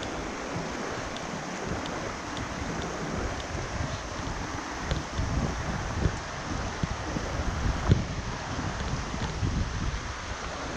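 Shallow river rushing over stones, a steady rush of water, with wind buffeting the microphone from about halfway in.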